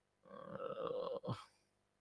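A man's short, low, wordless vocal sound close to the microphone, lasting a little over a second.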